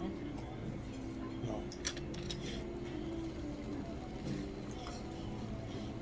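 A few light clicks of wooden chopsticks against a bowl as food is picked up, over a steady low background of voices and hum.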